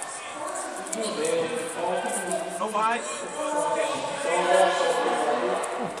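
Speech: voices talking over the hall's background.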